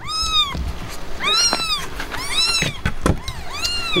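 Newborn Himalayan kittens mewing: about five short, high-pitched calls, each rising and falling in pitch, two of them overlapping near the middle.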